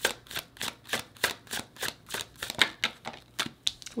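A tarot deck being hand-shuffled, the cards giving a quick, uneven run of clicks and slaps, about six a second.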